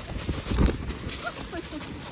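Snow tube sliding over snow and slowing: wind noise on the microphone with a thump about half a second in, then fading, and faint distant voices.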